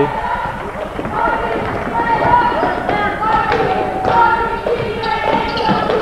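A basketball being dribbled on a hardwood gym floor, a few thuds, under a steady background of voices.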